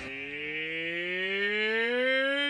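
A cartoon man's voice, Homer Simpson's, holding one long drawn-out cry that rises slowly in pitch and grows a little louder.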